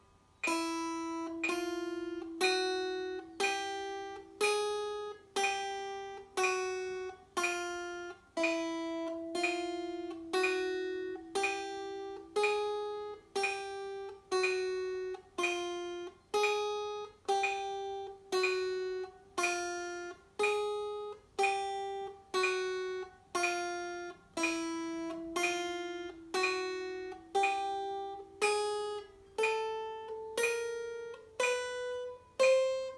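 Acoustic guitar playing a slow chromatic picking exercise, one single plucked note each second at 60 beats per minute, each note ringing until the next. The pitch moves up and down in small steps from note to note.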